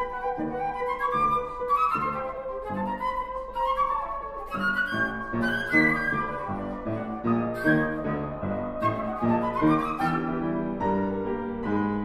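Concert flute and grand piano playing a fast classical passage: quick flute runs that climb in pitch several times over repeated piano chords.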